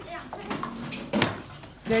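Low chatter of children's voices in a classroom with a single sharp knock about a second in, then a woman's voice starting at the very end.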